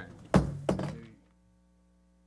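Wooden gavel rapped twice, two sharp knocks about a third of a second apart, marking the adjournment of the meeting. About a second in, the sound drops away to a faint steady electrical hum.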